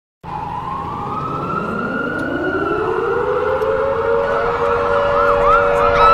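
Several sirens sounding together, starting abruptly and growing louder. One winds slowly up in pitch over about three seconds and then holds, while others sweep quickly up and down in the last couple of seconds.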